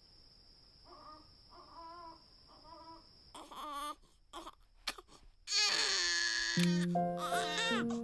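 A baby crying: a few faint whimpering cries, then louder, with crackles in between and a loud wail about five and a half seconds in. Music with steady notes begins about a second later.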